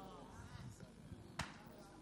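A quiet pause in amplified speech in a church hall: faint background voices during the first second, and a single sharp tap about one and a half seconds in.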